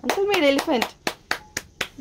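A few people clapping their hands in a quick run of claps, with a short voiced exclamation in the first second.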